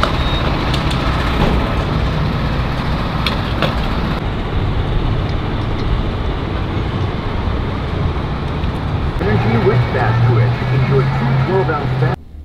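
Steady traffic and vehicle engine noise with a low hum, a few light clicks in the first four seconds, and indistinct voices over the last few seconds.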